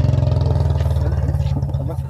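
A motorcycle engine running steadily with an even low pulse, growing quieter over the last second, with people talking over it.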